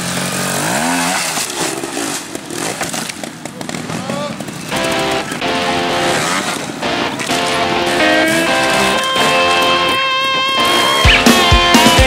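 Trials motorcycle engine revving in short rising and falling blips. About five seconds in, music with steady held notes fades in and takes over, and a rock beat with bass starts near the end.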